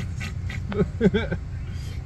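People laughing inside a car cabin over the steady low hum of the idling car, with a couple of short laughs about a second in.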